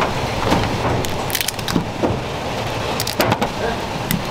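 Lobster shell cracking and crunching under a kitchen knife blade on a plastic cutting board: a string of short, sharp cracks.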